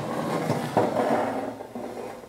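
The blade-access cover of a Hammer B3 Winner combination saw being pulled away, a rough sliding scrape with a small knock partway through, trailing off near the end.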